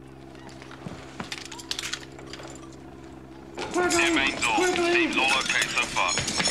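A few light metallic clicks as a handgun is laid down on a carpeted floor, over a steady low hum. Then, about three and a half seconds in, loud raised male voices shout over one another.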